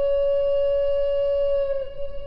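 Background music: a woodwind-like instrument holds one long note at the end of a short melody, sagging slightly in pitch and fading a little near the end.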